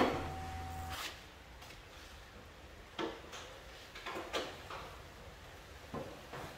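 A few light knocks and clicks of a loose Alfa Romeo Giulietta front wing panel being handled and offered up against the car body for a test fit: a click at the start, then scattered knocks about three seconds in and around four seconds in.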